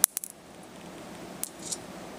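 High-voltage sparks from a CRT television jumping to a pointed probe. Three sharp snaps come in quick succession at the start, then two softer crackles about a second and a half in.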